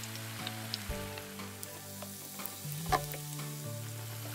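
Batter-coated baby corn deep-frying in hot oil in a pan: a steady sizzle with scattered crackles and one louder pop about three seconds in.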